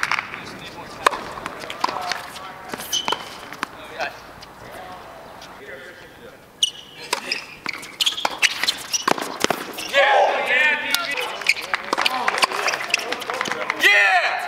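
Tennis balls being struck by rackets and bouncing on a hard court, a series of sharp pops spread through the rally play. Voices calling out from players and people courtside join in, loudest a little past two-thirds of the way through.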